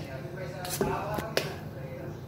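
A spoon stirring butter in water in a steel bowl, with a few light clicks of the spoon against the bowl as the butter is washed.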